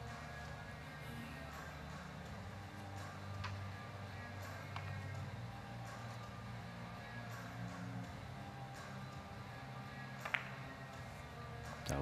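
Quiet hall sound with faint low background music, and a sharp click about ten seconds in: the cue tip striking the cue ball for a three-cushion bank shot.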